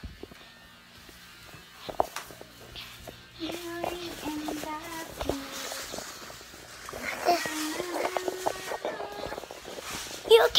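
A young child singing a wordless tune in two phrases of held notes that step up and down. Before it, a few soft knocks from the phone being handled against clothing.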